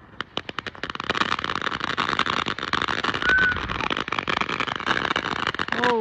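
Ground fountain firework spraying sparks: a quick run of sharp pops, then dense continuous crackling, with a brief short whistle about three seconds in.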